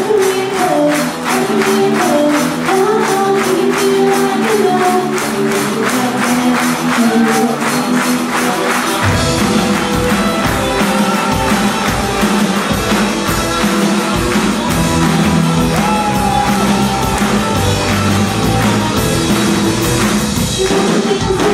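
Live rock band playing and singing, with electric guitars, a drum kit and handclaps keeping a steady beat. The bass guitar and low drums come in heavily about nine seconds in.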